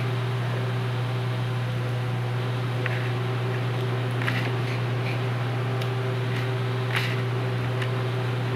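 A steady low hum throughout, with a few faint, scattered clicks of a kitchen knife slicing through a tomato onto a plastic cutting board.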